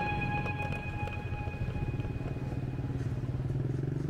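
Motorbike engine running in city traffic, heard from the rider's seat. A steady low hum with traffic noise around it, and the engine note rises a little near the end. Background music fades out in the first second.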